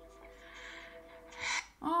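Faint held notes of background music, and about one and a half seconds in a woman's short, sharp intake of breath, a gasp of dismay.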